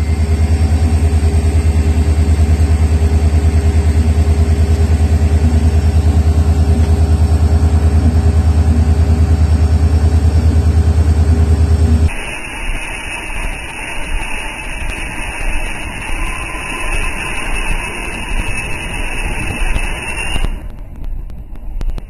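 Railway locomotive's engine idling with a loud, steady, evenly pulsing low throb. About halfway through, it gives way abruptly to a quieter, rougher running rumble as the train moves along the track.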